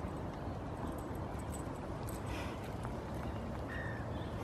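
A horse's hooves stepping on soft paddock dirt as it walks up to the fence, a few light strikes over a steady low rumble.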